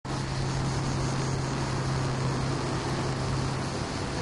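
Steady distant city traffic noise with a constant low hum.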